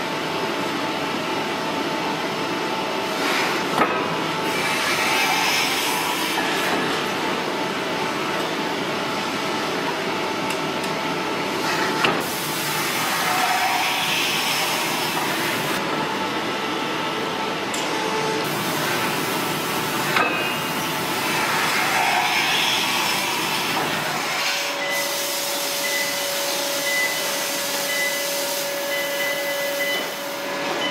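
Forging-shop noise as red-hot steel is worked under a heavy forging press: a steady machinery din with three sharp metallic knocks spaced several seconds apart. Near the end the deep rumble drops away and a steady hum tone comes in.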